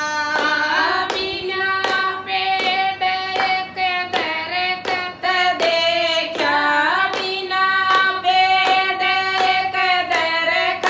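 A group of women singing a Haryanvi devotional bhajan, keeping time with steady hand claps about twice a second.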